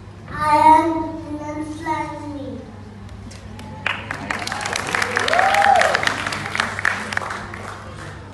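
A high voice calls out in drawn-out phrases for about two seconds. About four seconds in, audience applause starts suddenly and dies away near the end.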